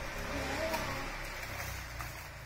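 A low, steady rumble, with a brief faint voice about half a second in.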